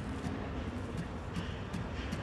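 Outdoor city background noise: a steady low rumble with a few faint clicks, before any guitar is played.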